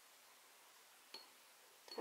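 Near silence: room tone, with one faint short click just after a second in.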